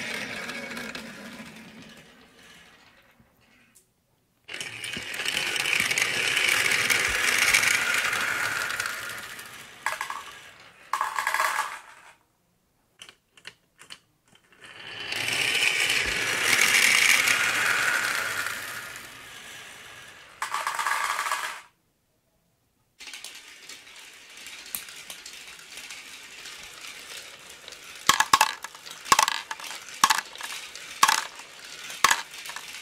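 Marbles rolling down a toy marble run's plastic spiral tracks, a steady rolling rattle that swells and fades in two long runs. Near the end come quick clicks and clacks as marbles drop into a plastic toy truck bed.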